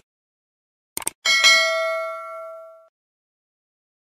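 Subscribe-button animation sound effect: two quick mouse clicks about a second in, then a bell-like notification ding that rings and fades away over about a second and a half.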